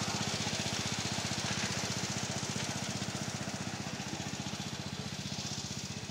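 A 7½-inch gauge miniature railway locomotive hauling riders, running with a rapid, even beat of about a dozen pulses a second that slowly fades as the train pulls away.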